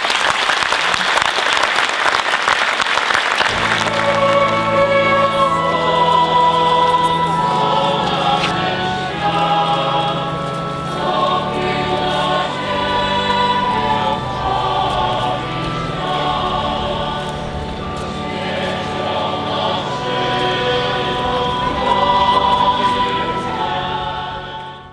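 Applause for the first few seconds, then a choir singing a slow hymn in long held notes, over a steady low accompaniment.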